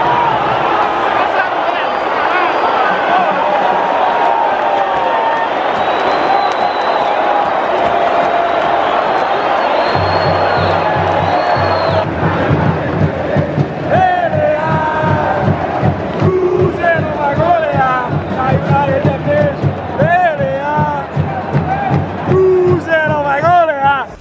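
Football stadium crowd chanting and singing together. A steady low beat joins about ten seconds in, and louder single voices shout and sing close by in the second half.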